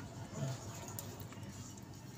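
Quiet room with a steady low hum, a brief murmured voice about half a second in and a faint click about a second in.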